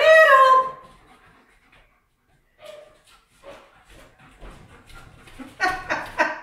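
Golden retriever making short whining sounds that grow louder in the last second, as it waits eagerly for a treat.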